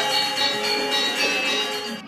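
Gamelan ensemble playing, its metallophones ringing in a dense, bell-like layer of many overlapping tones; the playing falls away right at the end.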